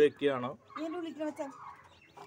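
Broody native hen sitting on hatching eggs, giving a few short calls in the first second and a half as she is handled on the nest.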